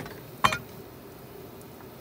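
A cleaver striking a wooden log chopping block, one sharp knock about half a second in as it chops through the quail.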